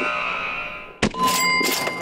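Edited-in sound effects: a buzzer-like 'wrong' tone fading away, then about a second in a sharp hit with a bright ringing ding, a 'correct' chime marking the right answer.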